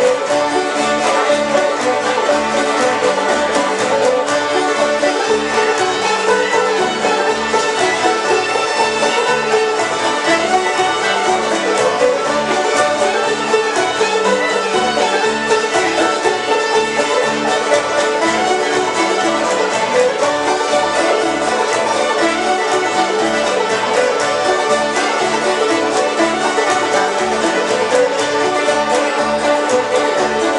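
A string band playing a tune together on fiddle, acoustic guitars, mandolin and upright bass, with the plucked bass keeping a steady beat.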